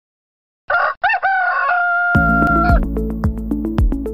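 A moment of silence, then a long animal call: a few short notes ending in one held note. Music with a steady beat comes in about halfway through and carries on.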